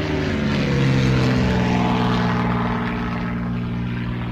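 Propeller aircraft engine droning steadily. Its pitch sinks a little over the first second, then holds.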